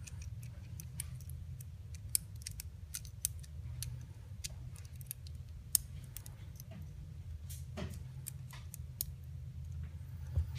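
Light, irregular clicks and taps of small pistol parts being handled and fitted together: the trigger and trigger bar going back into a Ruger American Pistol's fire-control chassis. A low steady hum runs underneath.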